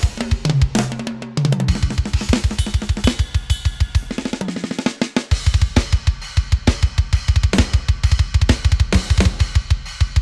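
Hertz Drums virtual drum kit playing a metal MIDI groove: a fast, even run of bass drum strokes with snare and cymbals. The snare sample is switched among different snares while the groove plays. The kick drops out briefly just after a second and again around five seconds in.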